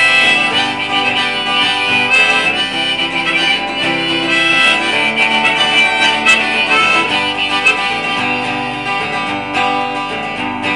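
Harmonica playing an instrumental break with held notes over a steadily strummed acoustic guitar.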